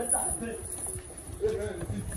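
Footsteps on a hard pavement, with a voice speaking in short snatches, near the start and again about a second and a half in.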